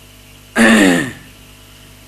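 A man clearing his throat once into a microphone, about half a second in: a short, rough sound that falls in pitch.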